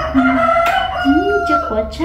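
A rooster crowing: one long call lasting nearly two seconds, held steady and dropping slightly at the end, with people talking under it.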